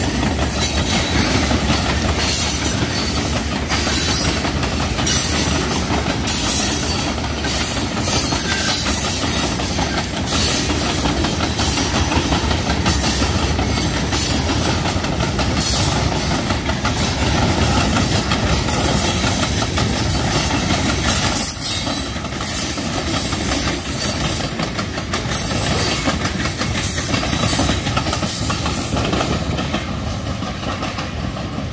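Freight train of loaded rock hopper cars rolling past at close range: a steady rumble of steel wheels on rail, with irregular clicks and clacks as the wheels cross rail joints.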